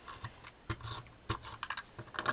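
Paper and card craft pieces being handled on a tabletop: an irregular string of short clicks, taps and light rustles.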